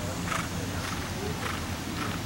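A horse trotting on sand arena footing: soft hoof strikes about twice a second over a steady low rumble.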